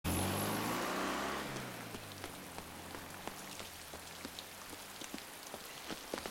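Steady heavy rain falling on hard surfaces, with scattered drop taps. A low hum fades away over the first two seconds.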